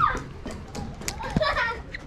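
A small child's high-pitched voice calling out twice, once at the start and again about a second and a half in, with a few light knocks between.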